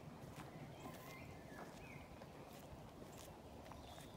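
Faint footsteps on a soft bark-mulch path, a scatter of light irregular steps over a low rumble from the walking phone.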